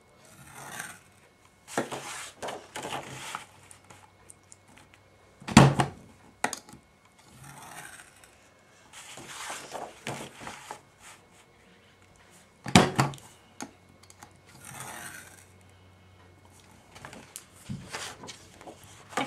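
Stampin' Up! Envelope Punch Board in use: the punch clunks down sharply twice, about six and thirteen seconds in. Between the punches the scoring tool scrapes along the board's groove, and the paper rustles as it is slid and turned on the board.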